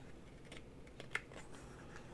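Fingers handling the paper pages of a hardback picture book: a few faint, short clicks and taps, the sharpest a little past a second in.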